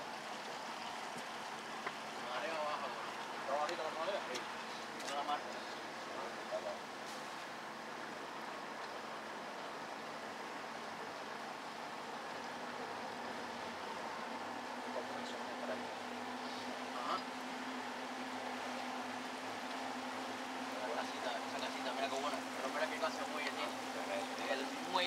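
A boat's engine running steadily at slow speed, a low hum over a hiss of water and air; the hum grows stronger about halfway through.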